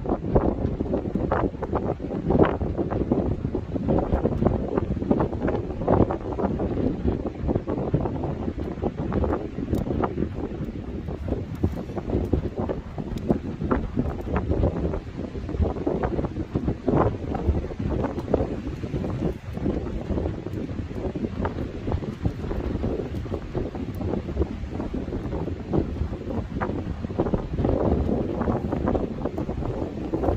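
Small wood fire crackling in a steel fire box stove, with frequent sharp pops, under a steady gusty wind rumble on the microphone.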